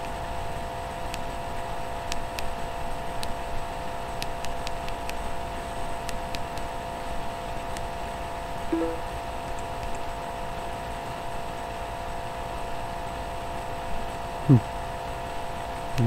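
Steady room hum with several tones in it, like a fan or electrical equipment. Faint scattered clicks come a few seconds in, and a brief falling sound near the end is the loudest thing.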